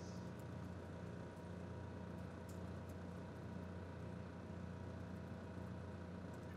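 Steady low hum of a hall's sound system, with a few faint, scattered clicks of laptop keys being typed.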